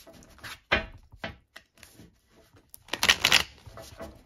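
A deck of tarot cards being riffle-shuffled by hand. A few short card flicks and taps come first, then a loud, dense riffle as the cards cascade together about three seconds in.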